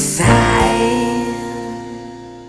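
Punk rock'n'roll band playing the song's closing chord: a last hit about a quarter second in, then the chord is held and rings out, fading away.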